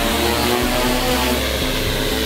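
Altura Zenith ATX8 industrial drone's rotors whirring steadily as it hovers low over the ground.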